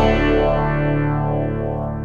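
Country music: a male baritone voice holds a low A2 at the end of a sung line, over guitar. The note is steady and slowly fades.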